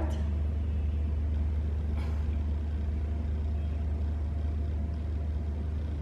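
Steady low background hum with no speech, and a faint tick about two seconds in.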